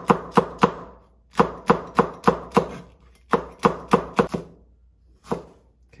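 Kitchen knife slicing a hot green chili pepper on a wooden cutting board: quick runs of blade knocks, about four a second, with short pauses between them. The cutting stops about four and a half seconds in, and one more knock follows.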